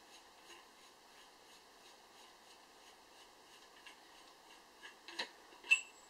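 Near silence while a brass air-cylinder valve is hand-unscrewed from its long thread, then a few light clicks near the end as it comes free of the cylinder.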